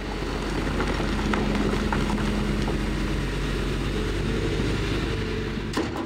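Heavy diesel machinery, an excavator and dump truck, running steadily with a low, even engine hum, with a few faint clicks of rock.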